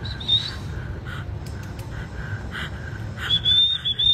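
A thin, high, nearly steady whistle, heard briefly at the start and again for about a second near the end, over a low steady rumble.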